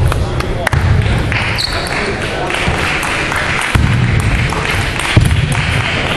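Light, scattered clicks of table tennis balls bouncing, over the murmur of voices echoing in a large sports hall.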